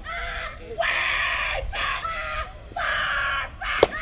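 Young players' voices in three long, loud shouted cheers. Near the end comes one sharp crack of a softball bat hitting the ball.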